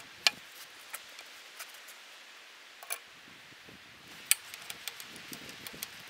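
Scattered sharp metallic clicks and taps of hand tools on steel as the excavator's bucket cylinder is reassembled. Two clicks, about a quarter second in and just past four seconds, stand out loudest, with lighter taps between and after them.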